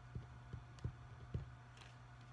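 Four soft, low knocks in the first second and a half from a ballpoint pen writing on paper on a desk, over a steady low hum.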